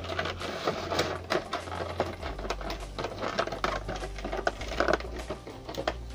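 Rapid, irregular clicking and rattling, like small objects or packaging being handled, over a low steady hum that drops lower about two seconds in.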